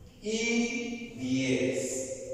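A voice singing or chanting held notes over music, in two phrases, the second starting a little past the middle.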